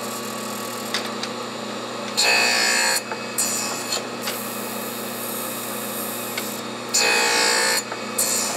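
Surface grinder running, its spindle motor giving a steady hum while the table traverses, with the abrasive wheel grinding across hardened steel files in two louder passes, about two seconds in and again near the end.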